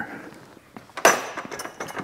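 A wire retainer being pulled out of a John Deere 318 garden tractor's brake linkage with pliers: a brief metallic scrape about a second in, followed by several small clinks.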